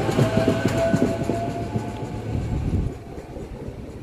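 SEPTA Silverliner electric commuter railcars passing close by, wheels clicking over the rail joints over a steady low hum and a faint whine. About three seconds in the sound drops abruptly to a quieter, more distant rumble.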